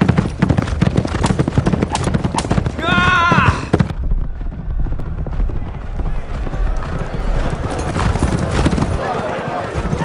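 Racehorses galloping, their hoofbeats drumming rapidly. A horse whinnies in a high, wavering call about three seconds in. The hoofbeats then drop back to a lower, duller rumble for a few seconds before picking up again near the end.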